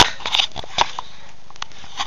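Handling noise as a cable plug and laptop are handled at close range: a few sharp clicks and knocks in the first second, then only a steady hiss.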